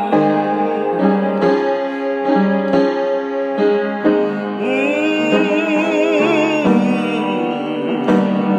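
Upright piano chords played with a man singing over them, holding a long note with vibrato from about halfway through.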